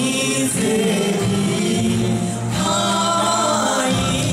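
Live band playing a song, with sung vocals over electric guitars and keyboards.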